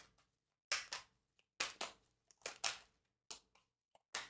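Tarot cards handled and shuffled in the hands: a string of short, faint papery rustles and snaps, about two a second.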